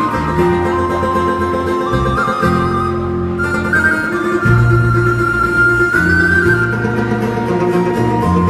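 Live folk band playing an instrumental passage on banjo, acoustic guitar and electric bass guitar, with a high melody of long held notes that step up and down over the plucked accompaniment.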